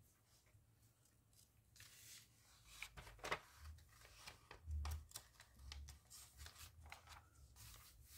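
Faint rustling and soft flicks of magazine pages being handled and turned over, with a few dull low thumps in the middle.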